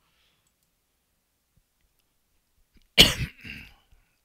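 Near silence, then a single loud cough about three seconds in, trailing off in a softer second burst.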